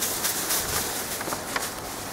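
Outdoor ambience of a pedestrian market street: a steady hiss of background noise with a few scattered sharp clicks and knocks.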